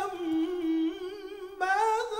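A male munshid chanting an ibtihal, an Islamic devotional supplication, solo into a microphone. He draws one long wavering melismatic phrase down to a low held note, then leaps to a higher phrase about a second and a half in.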